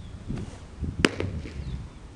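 A thrown baseball popping into a catcher's leather mitt: one sharp crack about a second in.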